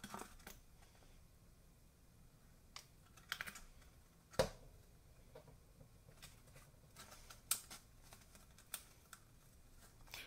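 Faint, scattered clicks and rustles of fingers handling and pressing a cardstock hat brim against its glued seam; the sharpest tick comes a little past four seconds in.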